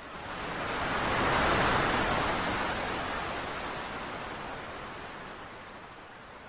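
Ocean surf: a wash of foaming water that swells over the first second or so and then slowly fades away.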